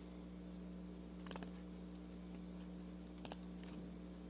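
A few faint, sparse clicks and rustles from handling the folded paper and scissors, over a steady low hum.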